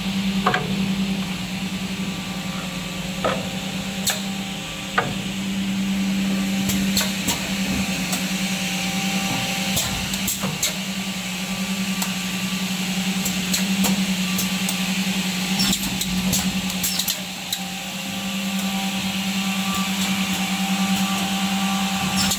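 Automatic edge banding machine running, with a steady motor hum and scattered sharp clicks and knocks from its working units as a panel is fed through.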